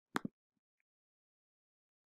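Two sharp clicks about a tenth of a second apart from a computer mouse click, as a browser tab is selected.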